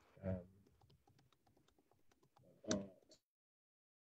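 Light, irregular typing on a computer keyboard, with two short wordless vocal sounds, one near the start and one nearer the end. The sound cuts out completely a little after three seconds in.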